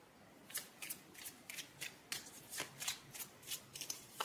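Tarot cards being shuffled by hand: a run of faint, irregular card flicks and snaps, about three a second, starting about half a second in.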